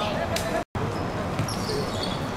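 A football being kicked on a hard outdoor court, with players' voices in the background; a single sharp impact stands out just under half a second in. The sound cuts out for an instant at an edit about two-thirds of a second in.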